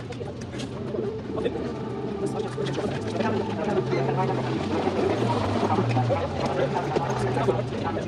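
Indistinct conversation among a few people standing around a parked motorcycle, with a steady low hum underneath.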